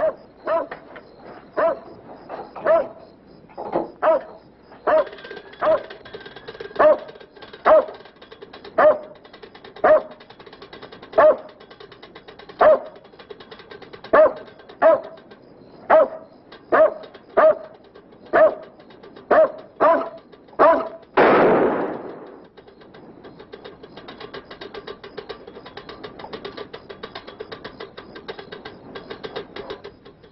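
A dog barking over and over, about one bark a second. About two-thirds of the way through comes a single louder burst lasting about a second, followed by a quieter, steady rapid sound.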